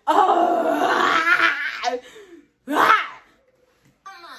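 A woman's long, loud, wordless cry of excitement, then a second shorter cry just before the three-second mark that rises and falls in pitch.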